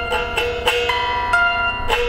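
Electric guitar played high up the neck: about half a dozen single plucked notes in a loose run, each ringing on and overlapping the next.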